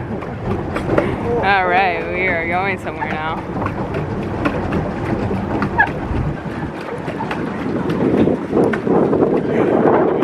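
Wind buffeting the microphone as a steady rushing noise. A high, wavering voice sounds for about a second and a half near the start.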